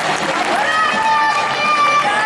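Spectators shouting encouragement to the competing couples, several voices overlapping and holding long calls.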